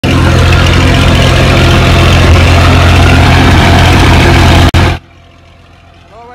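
Tractor diesel engine running loudly and steadily at close range with a deep hum. It cuts off abruptly about five seconds in, leaving only a faint low rumble.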